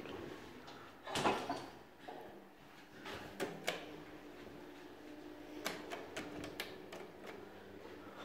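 Automatic sliding doors of a 1993 Sabiem traction elevator moving, with a knock about a second in and several sharp clicks later. A faint steady hum runs for a couple of seconds in the middle.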